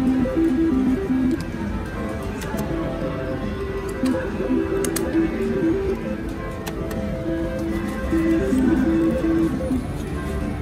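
Music with guitar playing steadily, with a few short sharp clicks over it about halfway through.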